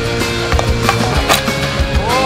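Background music with a steady beat, and a single sharp crack just after a second in as a shot is struck at the net.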